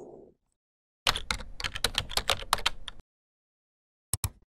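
Computer keyboard typing: a quick, even run of key clicks for about two seconds, starting about a second in.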